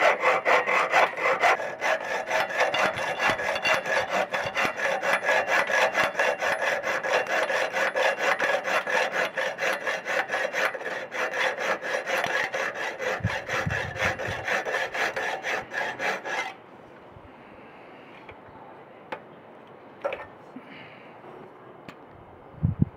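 Piercing saw cutting through a metal tube held in a vise, with fast, even back-and-forth strokes. The sawing stops suddenly about three-quarters of the way in as the cut goes through, followed by a few light clicks.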